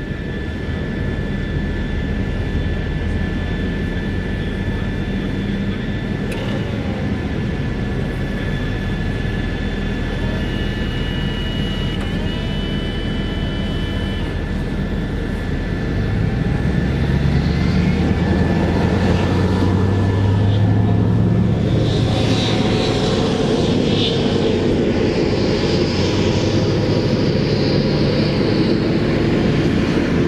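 Diesel engines of several armoured military vehicles running, with a steady high whine, growing louder about halfway through as the vehicles pull away.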